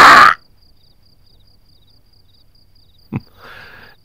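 The last syllable of a man's speech, then a quiet pause under faint, steady high chirping of night crickets. About three seconds in comes a short vocal sound, followed by a soft breath.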